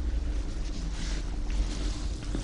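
Steady low rumble with a faint hiss of background noise, no speech.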